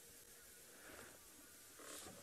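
Near silence: a faint, steady hiss of background noise.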